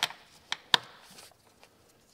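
Plastic clips of a car's engine air filter box snapping shut: two sharp clicks about half a second in, a quarter second apart.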